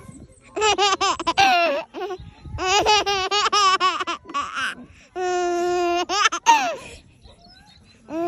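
A baby chuckling in three bouts of quick, rhythmic laughs, with short pauses between them. In the third bout, about five seconds in, she holds one steady high squeal for about a second, then it drops away in a falling note.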